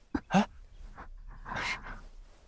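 Short whimpering cries: two quick falling yelps near the start, then a longer breathy cry near the end.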